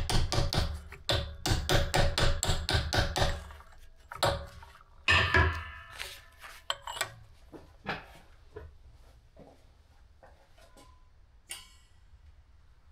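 A mallet tapping a stainless steel tube down onto a welding turntable to seat it before welding: a quick run of sharp taps, about four a second, for the first three and a half seconds. A few heavier knocks follow around four and five seconds, then scattered light clicks of handling.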